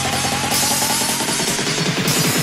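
UK bounce (scouse house) dance music in a build-up: a fast roll of repeated synth notes climbing slowly in pitch over a held bass.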